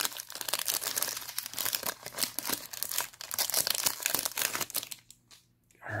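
Foil wrapper of a hockey trading-card pack crinkling rapidly as it is opened by hand, stopping about a second before the end.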